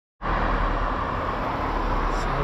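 Steady road traffic noise: a car's tyres and engine running past on the road.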